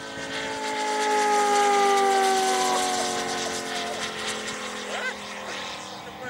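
A large-scale RC P-47's 250cc Moki five-cylinder radial engine and four-bladed propeller flying past: a steady many-toned drone that swells, is loudest about two seconds in, and slowly falls in pitch as the plane goes by, then fades.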